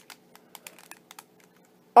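Rubik's Cube layers being turned by hand: a string of light, irregular clicks as the faces rotate.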